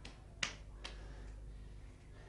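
Three light, sharp clicks about half a second apart, the middle one loudest, from long steel rods being handled.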